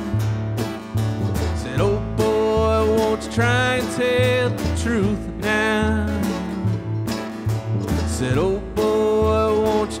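Live acoustic bluegrass trio playing: strummed acoustic guitar, picked mandolin and upright bass, the bass stepping from note to note under the strings.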